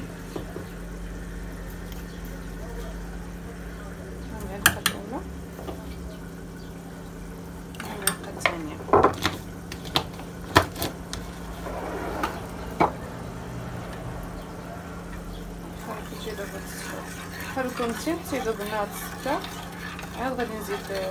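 A metal spoon clinking against a glass jar and a small saucepan as milk is spooned into and stirred: one clink about five seconds in, a run of clinks around the middle and another a little later, over a steady low hum.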